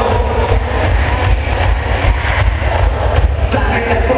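A live cuarteto band playing loud through a concert PA, recorded from inside the crowd, with a heavy bass that dominates and blurs the sound.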